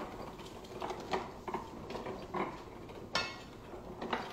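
Old platen letterpress running, its moving parts clacking and clicking about every half second, the loudest clack a little after three seconds in.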